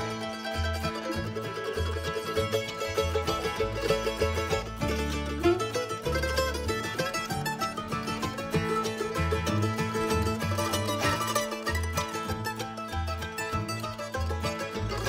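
Bluegrass instrumental break: an F-style mandolin takes the lead with quick picked runs, over acoustic guitar, banjo and upright bass keeping a steady beat.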